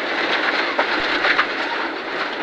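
Rally car at high speed on a gravel stage, heard from inside the cockpit: steady road and tyre noise with gravel clattering against the underbody and a sharp knock about a second in, as the car slows hard from around 158 to 116 km/h.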